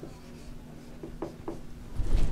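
Dry-erase marker squeaking on a whiteboard in a few short strokes as a word is written, over a faint steady hum.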